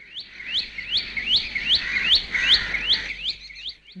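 A bulbul calling: a quick note repeated about ten times, roughly three a second, each one sweeping upward in pitch.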